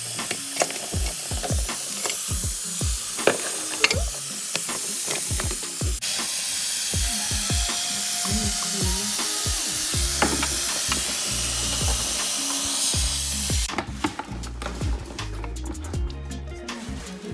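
Kitchen tap water running onto a bowl of oysters while hands rub and turn the shells, with frequent clicks and knocks of shell against shell and the steel bowl. The running water cuts off suddenly near the end.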